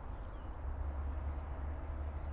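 Faint, steady low rumble of background noise with no distinct event, apart from one tiny click shortly after the start.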